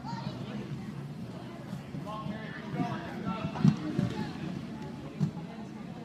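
Indistinct voices of people talking in a large, echoing rink hall over a steady low rumble, with a short low thump a little past halfway and another about a second and a half later.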